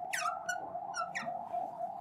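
Fluorescent marker squeaking on a glass lightboard while writing brackets: a run of short squeaks, each falling in pitch. A faint steady hum lies underneath.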